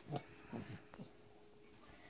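Three short, faint grunts from a person's voice, each dropping in pitch, coming within about the first second.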